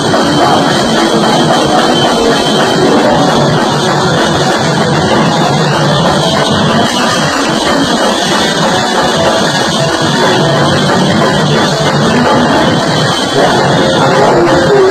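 A rock band playing live and loud: electric guitar over a drum kit, with no break in the music.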